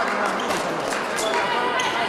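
Fencing hall din: scattered thuds and sharp clicks from footwork and blades on the pistes, over indistinct voices echoing in the large hall.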